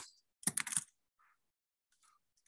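A quick burst of computer keyboard keystrokes, a rapid run of clicks lasting about half a second, starting about half a second in as a word is typed.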